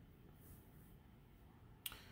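Near silence: room tone, with a single short click near the end.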